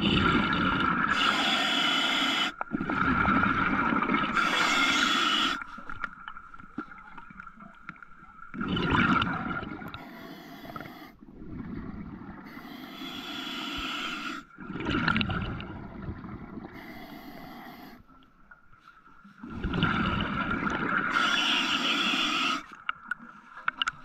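Underwater noise on a diver's camera: loud stretches of rushing, bubbling water lasting a few seconds each, with quieter gaps between them and a faint steady tone underneath.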